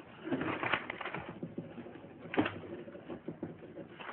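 Pens scratching on paper in a quiet room, in short, irregular strokes with faint rustling between them.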